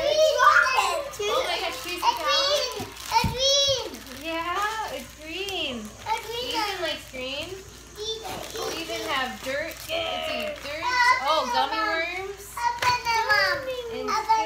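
Young children's high-pitched voices talking and exclaiming, at times several at once, with no clear words.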